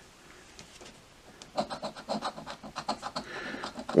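Scratch-off lottery ticket being scratched: rapid, repeated scraping strokes across the ticket's latex coating to uncover the winning numbers, starting about a second and a half in.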